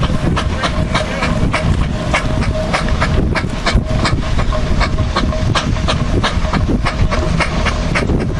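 Steam traction engine working under load as it hauls a trailer of logs, its exhaust beating in a quick, even rhythm of about five beats a second over a steady low rumble.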